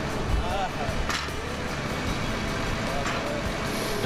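Steady rumble of a heavy-machinery engine running, with faint voices and background music over it.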